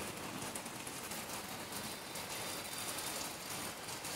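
Steady rain falling, an even hiss of drops on foliage and wet ground.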